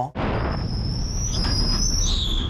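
Stock car's engine rumbling steadily as it rolls into the pit stall, with a thin high-pitched squeal over it that creeps slightly upward in pitch.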